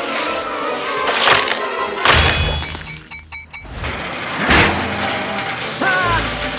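Cartoon sound effects of glassy crystal shards smashing and shattering over background music, with three loud crashes: about a second in, about two seconds in, and about four and a half seconds in.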